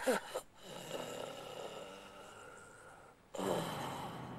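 An injured man's drawn-out groan falling in pitch and trailing off, followed by faint, rasping, snore-like breathing. Near the end a louder, busier background cuts in suddenly.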